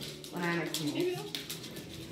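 A quiet, indistinct voice, with faint clicking and rattling from a child's training-wheel bicycle rolling over a hardwood floor.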